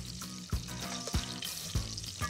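Diced bacon sizzling in bubbling melted butter in a stainless saucepan, under background music with a steady beat, a little under two thumps a second.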